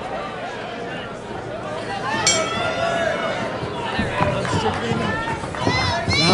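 Crowd chatter and indistinct voices at a ringside fight crowd, with a louder voice calling out from about two seconds in.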